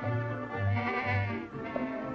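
Cartoon orchestral score with a plodding bass line, about two notes a second, under a high, wavering, bleat-like cry from a cartoon animal that fades about one and a half seconds in.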